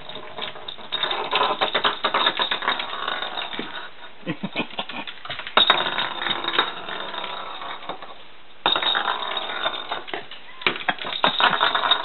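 A rainbow lorikeet pushing and chasing a small wicker toy ball across a countertop: busy runs of rattling, clicking and knocking that come in several spells with short lulls between them.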